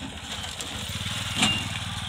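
Motorcycle engine running as it rides past close by, its steady note getting louder, with a short sharp clack about a second and a half in.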